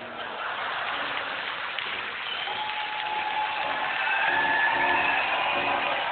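Theatre audience applauding, the clapping building gradually louder.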